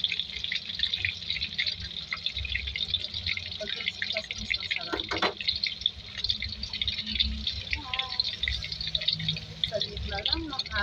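Battered shrimp tempura deep-frying in hot oil in a pan, the oil sizzling and crackling steadily.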